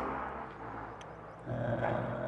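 A short pause in a man's talk with a faint outdoor background hiss. About one and a half seconds in comes a drawn-out, even-pitched hesitation sound, 'ehh'.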